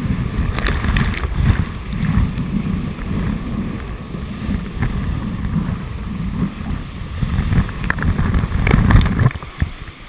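Rushing whitewater of a standing river wave and spray hitting a GoPro riding at water level on a handboard, with heavy low buffeting on the microphone and scattered splashes. The rumble drops away abruptly near the end.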